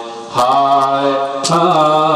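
A male preacher chanting in a sung, melodic delivery: long held notes, with a new phrase beginning about a second and a half in.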